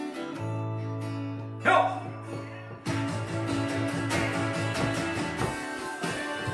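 Electric guitar break in a bluesy rock-and-roll Christmas song, playing over a held low bass note. There is a sharp loud accent just under two seconds in, then busy strummed chords.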